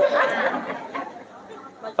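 Speech only: a man speaking Khmer, his voice trailing off into a brief pause in the second half.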